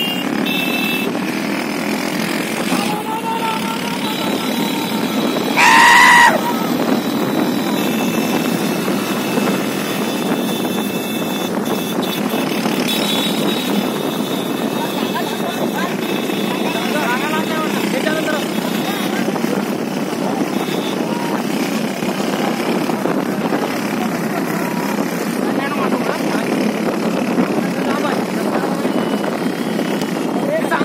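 Many motorcycles running together along a road, their engine noise steady, with voices mixed in. About six seconds in, a loud horn sounds once, briefly.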